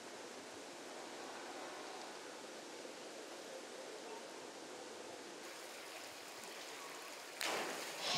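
Steady faint hiss of outdoor diving-pool ambience while a diver holds a handstand on the 10 m platform. Shortly before the end a sudden louder rush of noise comes in as she enters the water.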